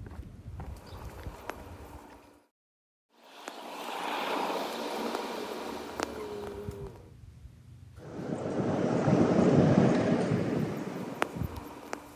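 Rushing, wind-like noise in edited segments. It cuts off abruptly into silence about two and a half seconds in, then comes back as two long swells. The second swell is the louder and deeper one, and it rises and fades.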